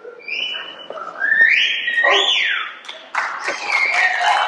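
Audience whistling: a short held whistle, then a rising whistle and one that swoops up and back down. Applause breaks out about three seconds in.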